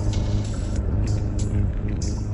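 Electronic dance track with a heavy, steady bass and short hi-hat-like percussion hits over it, retuned to a solfeggio frequency pitch.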